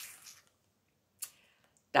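Clear plastic wax-bar pack being handled: a faint crinkle at the start and a single short click of the plastic about a second in.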